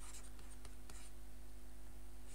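Stylus scratching and tapping on a drawing tablet while a short expression is handwritten. A faint steady hum runs underneath.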